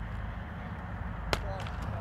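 Cricket bat striking the ball once, a single sharp crack a little after a second in, over a low steady background rumble. The ball is hit cleanly and goes for six.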